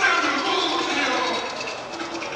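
Men's voices talking and greeting one another amid the chatter of a crowded hall, with no words clear enough to make out.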